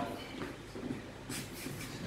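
Shoes stepping and scuffing on a wooden floor as a couple dances, with a few short brushing scrapes.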